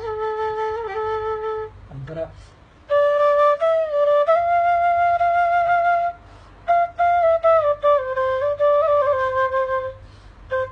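Tula, an Afghan folk flute, playing a slow melody in phrases of held notes with small ornamental steps in pitch. It pauses briefly about two seconds in and again about six seconds in.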